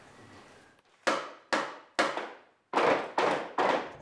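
Six sharp percussive hits, each fading quickly, spaced about half a second apart and starting about a second in.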